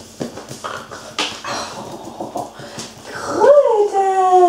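A Labrador puppy's claws clicking and scrabbling on a tiled floor as it grabs a toy and dashes off with it. Near the end comes one long, loud, high-pitched whine that rises and then slowly falls.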